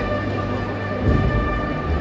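Procession band playing a march behind a Holy Week paso: held brass notes over a bass drum beat, with a heavy drum stroke about a second in.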